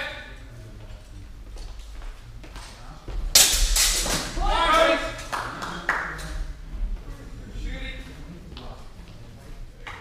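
Practice swords clashing in a quick exchange about three seconds in, a sharp clatter of blows with some ringing, followed by loud shouting. There is echo from a large hall.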